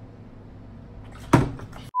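One sharp thud about a second and a half in, as a plastic gallon bleach jug is set down hard on a table, with a short rattle after it, over a low steady room hum. The sound cuts off abruptly just before the end.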